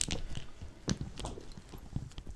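A few short, sharp clicks and knocks over a low rumble, the loudest about a second in.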